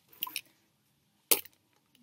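A few brief, faint rustles of packaging being handled as an item is lifted out of a cardboard subscription box, then one sharp crackle past the middle.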